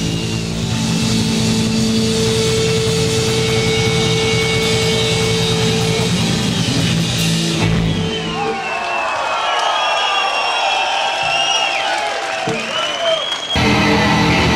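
A live rock band with electric guitar, bass and drums plays held notes. The music breaks off about eight seconds in, and a large crowd cheers and shouts for several seconds. The full band comes back in abruptly just before the end.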